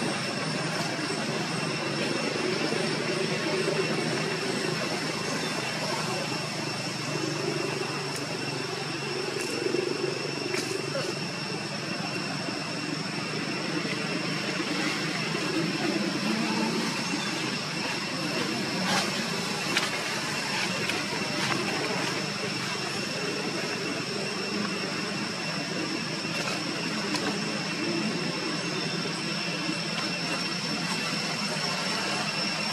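Steady outdoor background noise: a constant high-pitched drone over a low, shifting murmur, with a few faint clicks.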